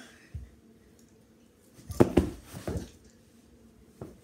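A child's body and feet hitting the floor in a ball-standing attempt: one soft thump early, then a quick cluster of four or so knocks and thumps about two seconds in, the first the loudest.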